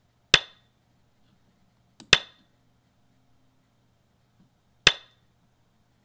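Three sharp clacks of Go stones being placed, from the online Go client's stone-placement sound, spaced about two to three seconds apart.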